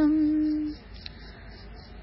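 A woman's chanting voice holds the closing nasal 'm' of a line of a Sanskrit prayer verse on one steady pitch for under a second. Then it stops, leaving a pause of faint room noise.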